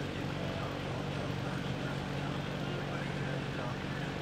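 Steady indoor-arena background: a constant low hum with indistinct voices in the background.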